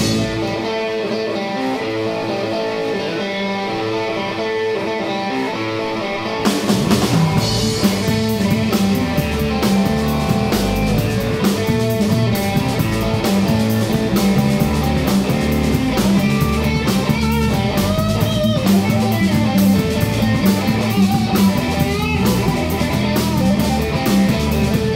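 Live rock band of electric guitar, electric bass and drum kit. For the first six seconds the guitar plays with no bass or cymbals; then bass and drums come in and the full band plays on, somewhat louder.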